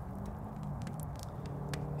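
Faint campfire crackling, a few sparse clicks over a low steady hum.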